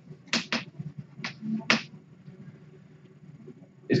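Chalk on a blackboard: four short strokes in the first two seconds, then only faint room noise.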